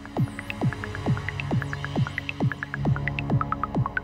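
Beatless stretch of live modular-synthesizer electronic music. Short falling-pitch sweeps come about twice a second over scattered high blips, and a low steady drone comes in about a second in.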